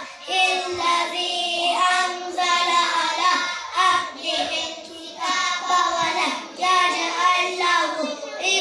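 A group of young children chanting Quranic verses together in unison, in long held melodic phrases with short breaks between them.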